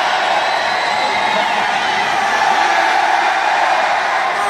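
Large arena crowd cheering and shouting steadily, with individual voices calling out close by among the general din.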